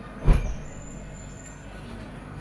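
A single soft thump of bedding, a pillow or sheet, landing on a bed about a quarter second in, over a steady room hum.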